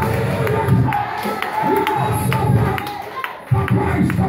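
Lively congregational praise music with a steady percussive beat, with a crowd of voices singing and shouting over it. The sound dips briefly and comes back sharply about three and a half seconds in.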